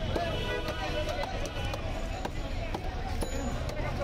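A large knife chopping through chitol (clown knifefish) flesh and bone, with short sharp strikes at irregular spacing, two or three a second. Voices and a low steady rumble go on underneath.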